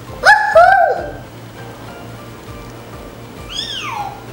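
Orca (killer whale) calls: two loud calls that rise and then fall in pitch within the first second, then a quieter call sliding down in pitch near the end, over soft background music.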